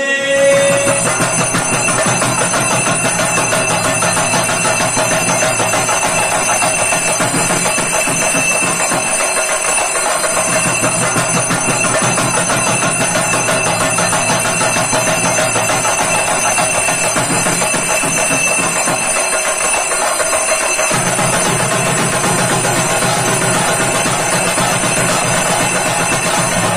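Steady, continuous instrumental music.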